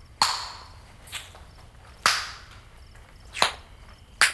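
Four sharp, whip-like hits, roughly a second apart, each fading away over about half a second.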